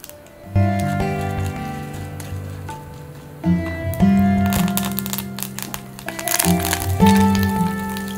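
Background music: sustained notes and chords that change every second or so.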